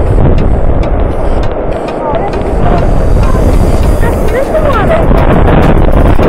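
Loud, steady rush of a white-water glacial river in the gorge below, mixed with wind buffeting the microphone.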